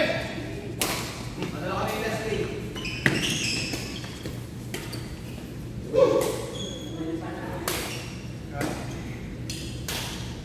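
Badminton rackets striking a shuttlecock, a few sharp hits in a reverberant gym hall, with the players' voices between the shots.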